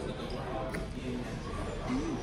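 Indistinct chatter of other diners in the background, with a single light click about three quarters of a second in.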